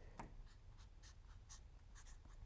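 Marker pen writing letters on a palette: a faint series of short stroke sounds as each letter is drawn.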